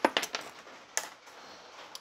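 Light metallic clinks and taps of a steel bolt and parts being handled against the front of a rotary engine block: a quick flurry of clicks at the start, then single clinks about a second in and near the end.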